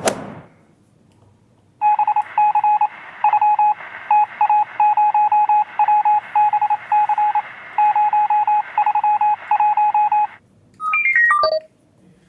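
Rapid electronic beeps at one steady pitch, like telephone keypad tones, in quick irregular runs for about eight seconds from two seconds in. Near the end comes a short run of tones falling in pitch.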